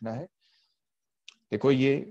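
A lecturer's voice speaking in Hindi, breaking off just after the start and resuming about one and a half seconds in. A single faint click falls in the short pause between.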